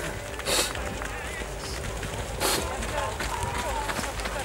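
Low, indistinct voices of people talking near the camera, with two short hissing bursts about half a second and two and a half seconds in.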